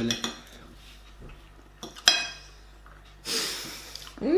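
Metal cutlery on china plates. One sharp ringing clink about two seconds in, then a longer scrape near the end as a knife cuts across a plate.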